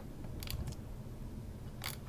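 A steady low electrical hum, with a few faint short clicks about half a second in and again near the end.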